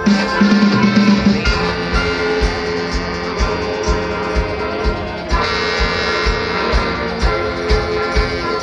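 Live rock band playing through a festival PA: electric guitar chords over a steady kick drum, about two beats a second.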